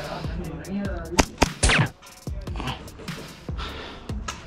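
A few sharp cracks of airsoft gunfire, the loudest a little over a second in, over background music.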